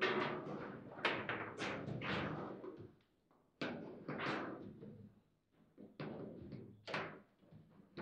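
Foosball table in play: the ball is struck by the rod figures and knocks against the table, as a series of sharp knocks that ring briefly in the room. The knocks come in irregular runs with short pauses.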